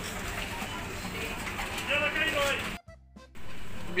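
Supermarket background sound of in-store music and distant voices over a steady hum. About three seconds in, it cuts out suddenly for about half a second where the recording is edited.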